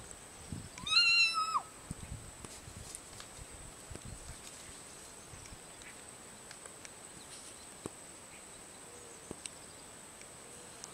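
A cat gives one drawn-out meow about a second in, rising, holding and then falling in pitch.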